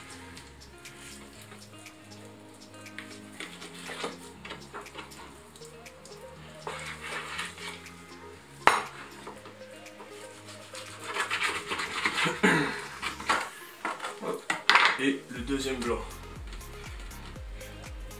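Kitchen knife cutting and scraping through a raw chicken on a wooden chopping board, in irregular bursts of scraping with one sharp knock about nine seconds in. Background music plays throughout.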